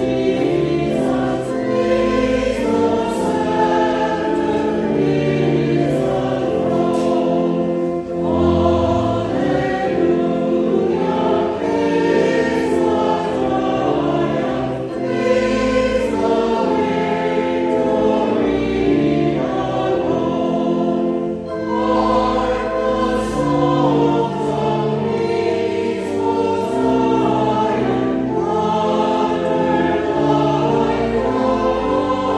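A choir singing with sustained chordal accompaniment, steady and unbroken: the sung response before the Gospel reading in a Lutheran service.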